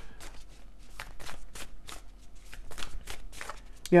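A Divine Masters oracle card deck being shuffled by hand: a quick, uneven run of card snaps and flicks.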